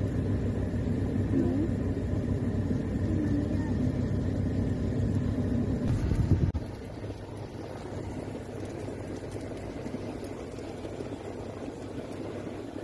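Steady low rumble of an SUV's engine running during off-road driving on sand, dropping noticeably in loudness about six and a half seconds in.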